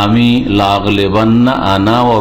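A man reciting an Arabic Quranic verse in a melodic chant, holding long, steady notes that slide from one pitch to the next.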